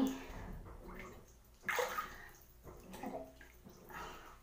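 Bathwater sloshing as a person moves in a filled bathtub, with one louder splash a little under two seconds in.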